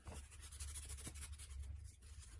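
A towel rubbing over an oil-soaked black walnut wooden spoon, buffing off the excess oil finish in a run of quick, faint strokes.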